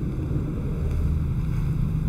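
A low, steady rumble of background noise picked up by the microphone, with no speech.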